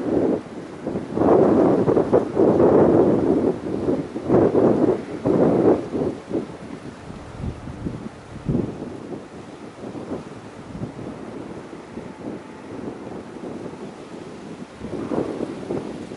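Wind buffeting the microphone in irregular gusts, loudest in the first six seconds and again near the end.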